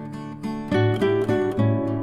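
Background music played on acoustic guitar, with a run of sharply plucked, louder notes through the middle.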